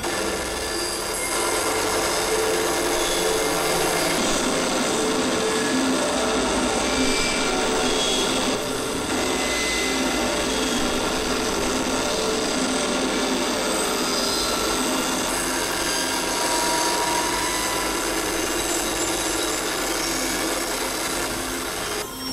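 Experimental electronic noise music: a dense, grainy synthesizer texture with many steady tones held over it, starting abruptly and running on without a beat.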